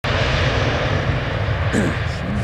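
Jet engines of a Ryanair Boeing 737-800 on its landing roll after touchdown, a loud steady rush of engine noise with a low hum beneath it.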